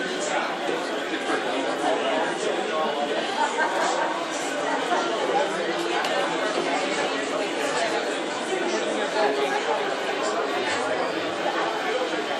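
Indistinct chatter of many voices in a large indoor ice rink hall, a steady babble with no single clear speaker.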